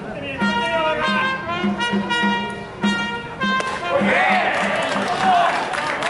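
Stadium cheering-section trumpet playing a short repeated fanfare over a steady drumbeat. About four seconds in, the music gives way to crowd voices shouting and cheering as a strikeout is called.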